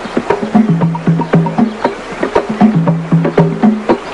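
Rhythmic percussion music: sharp strikes in a steady fast pattern over low pitched drum notes that alternate between two pitches.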